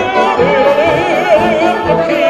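Live wind band music with a melody line on top that wavers with wide vibrato, likely a singing voice.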